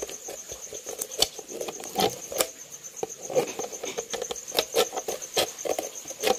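Thin plastic soda bottle being worked by hand: irregular sharp clicks and crackles of the plastic, with a steady, evenly pulsing high-pitched trill in the background.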